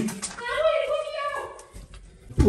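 A single high-pitched voice, one drawn-out call that slides and then falls, lasting about a second.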